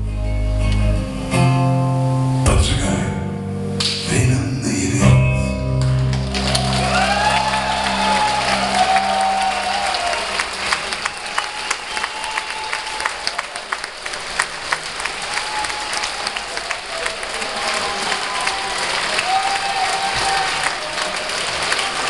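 A band's last chords on acoustic guitar and bass ring out for about six seconds. Then concert audience applause breaks out, with cheering voices, and runs on steadily.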